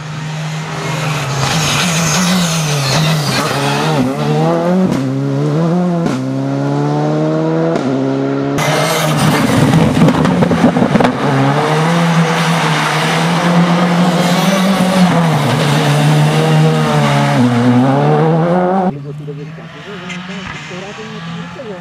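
Škoda Fabia R5 rally car's turbocharged four-cylinder engine at full throttle, its pitch climbing and then dropping through a series of quick upshifts. About eight and a half seconds in, the sound cuts to a close pass on a wet road, where a loud rush of tyre noise covers the engine before the revs climb and shift again. The sound drops away sharply just before the end.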